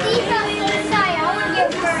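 High children's voices, sliding up and down in pitch, over background music.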